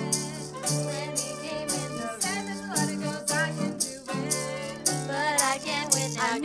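Live acoustic ensemble: a violin plays a melody with vibrato over a strummed Greek bouzouki, with a shaker keeping a steady beat.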